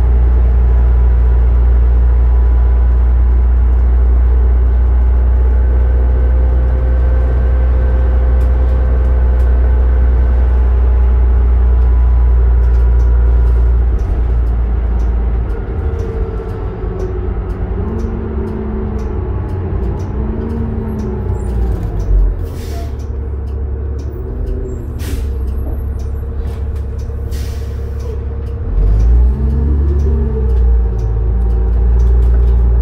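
Cabin sound of a 2007 New Flyer D40LF diesel transit bus under way: a steady loud drone for about the first half, then quieter running with the engine pitch rising and falling several times. Short hisses of air from the air brakes come in the second half.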